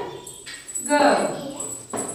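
A high-pitched, drawn-out vocal sound about a second in, falling in pitch as it goes.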